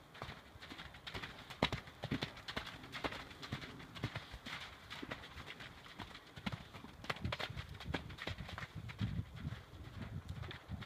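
Hoofbeats of a paint pony gelding running loose on arena footing: a quick, uneven string of knocks, several a second.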